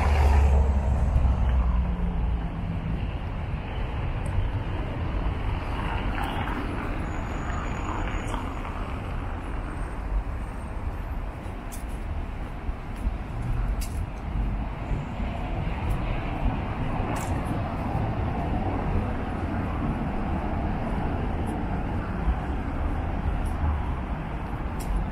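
City street traffic noise: a steady hum of cars on the road, with a louder low rumble about the first second and a half. A few faint ticks sit over it.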